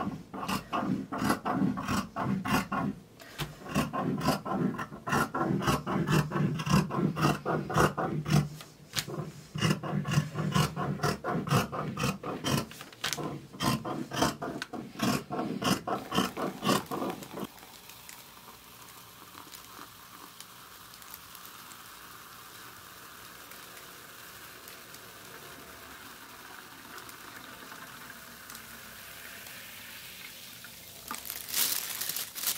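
Tailor's shears cutting fabric on a table in quick, repeated snips that stop about seventeen seconds in. After that only a faint steady hiss remains.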